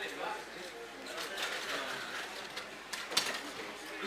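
Indistinct voices chatting around a roulette table, with clicks of casino chips being set down and handled; one sharp click about three seconds in is the loudest sound.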